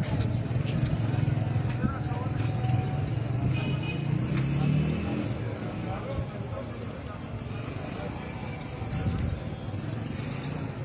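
Street ambience at a roadside gathering: a steady low rumble of passing traffic, with faint voices of people nearby.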